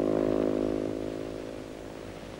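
Racing motorcycle engine running steadily at speed, its sound fading away over the two seconds as the bike passes and leaves.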